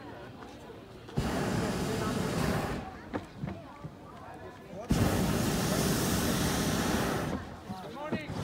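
Hot air balloon's propane burner firing in two blasts overhead: a steady, loud rush starting about a second in and lasting about a second and a half, then a longer one of about two and a half seconds from about five seconds in.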